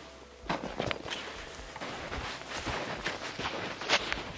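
Footsteps crunching in snow, an irregular run of short crunches with a louder one near the end.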